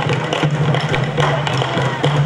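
Uruguayan candombe drums played together with one hand and one stick, a dense, continuous run of drum strikes.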